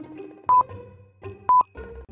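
Countdown timer beeping once a second, a short, high, steady beep heard twice, over soft background music.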